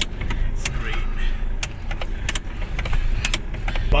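Four-wheel-drive vehicle driving over a bumpy dirt track, heard from inside the cab: a steady low engine and road rumble with irregular rattles and knocks as the body jolts.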